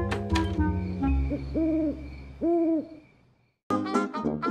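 A music phrase ends, then an owl hoots twice, two rise-and-fall hoots about a second apart. After a moment's silence, brassy music starts near the end.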